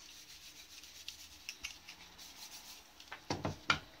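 Cloth rubbing over the plastic of a toner cartridge section in a series of faint, scratchy wiping strokes, cleaning off spilled toner. Near the end come two louder knocks of plastic being handled.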